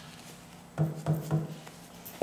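Paper towel and dead-blow hammer handled over a steel machine vise: a few soft bumps and rubs starting about a second in.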